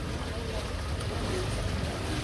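Outdoor ambience: a steady low rumble with faint voices of people nearby.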